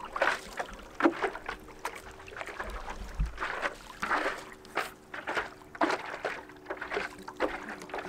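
Paddle strokes dipping and splashing in lake water beside a stand-up paddleboard, an uneven run of short splashes under a faint steady hum. A brief low wind rumble hits the microphone about three seconds in.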